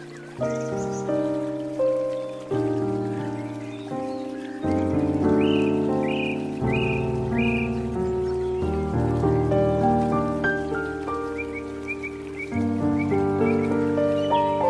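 Slow, gentle piano music: chords and single notes struck and left to fade. Short bird chirps are laid over it, a run of four in the middle and a few more near the end.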